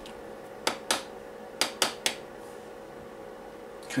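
Small 12-volt extractor fan running with a steady faint hum, drawing air through a home-made smoke filter box. Two pairs of sharp clicks come in the first two seconds.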